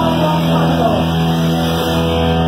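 Live hardcore punk band playing loud, with distorted electric guitars and bass holding a droning chord. A voice shouts over it in the first second.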